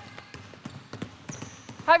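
Several basketballs dribbled at once on a hardwood gym floor: a scattering of overlapping, irregular bounces.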